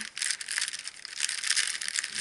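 Large plastic postal mailer bag crinkling and rustling as it is handled and turned on a table, a dense crackle that grows louder in the second half.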